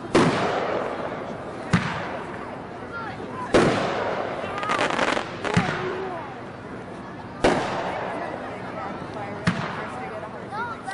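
The Tears From Heaven consumer firework firing aerial shells: six sharp bangs, roughly one every two seconds, each followed by a fading hiss.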